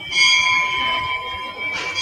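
A metal bell rings with several steady high tones. It is struck at the start and again near the end.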